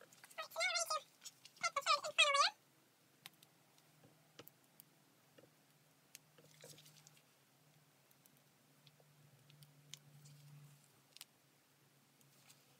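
Two short, high-pitched vocal calls close together near the start, each rising and falling in pitch, followed by faint scattered clicks.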